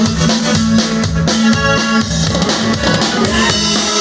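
Norteño band playing an instrumental passage: a drum kit keeps a steady beat with bass drum and snare under bass and guitar-type instruments.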